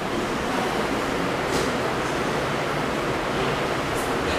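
Steady, even hiss of room noise, with no voice and no distinct events.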